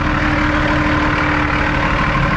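Semi truck's diesel engine idling close by: a steady, loud low rumble with a constant hum running through it.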